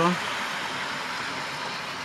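Model trains running on the layout's track: a steady, even whirring rush of motors and wheels on rail.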